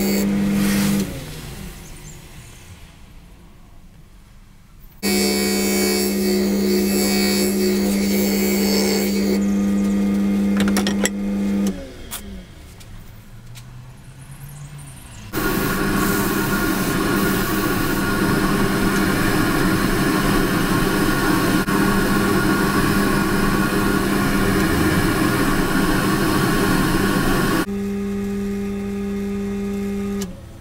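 Jet mini wood lathe's motor running with a steady hum. It spins down about a second in, starts abruptly again at about five seconds and spins down near twelve seconds. Between about 15 and 27 seconds a louder, rougher cutting noise comes from a tool working the spinning bowl, cutting back the hardened epoxy putty inlay, and the hum returns near the end.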